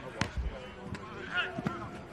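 Natural sound of a football practice field: a sharp tap and a low thud in the first half second, then faint distant voices.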